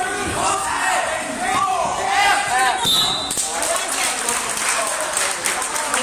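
Spectators and coaches calling out in a gym during a wrestling bout, mixed with thuds from the wrestlers on the mat. A short, high squeak comes about halfway through.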